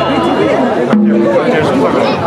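Dense festival crowd around a danjiri cart, many people talking and calling out over one another.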